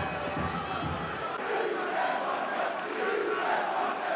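Football stadium crowd chanting, a mass of voices singing together in long drawn-out notes. A low rumble under it drops away about a second in.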